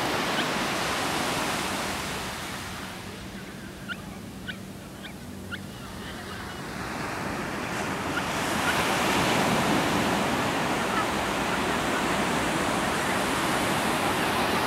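Ocean surf washing onto a beach, with wind: a steady rush of noise that eases a few seconds in and swells again after about eight seconds as a wave breaks. A few short, high chirps come during the quieter middle.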